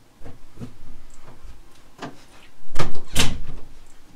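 A door being handled and a person walking into the room: a run of knocks and thuds, the loudest cluster about three seconds in.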